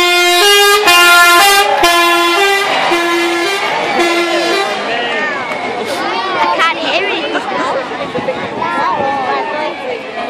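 A passing MAN team coach sounds a musical horn, a loud tune of about nine short notes stepping back and forth between two close pitches for around four and a half seconds. Then the roadside crowd shouts and cheers.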